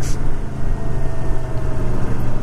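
1982 Honda Silver Wing's 500 cc V-twin engine running steadily under way, with a constant rush of wind and road noise.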